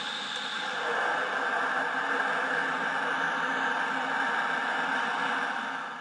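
Steady whirring hiss with no speech, holding an even level and fading away at the very end.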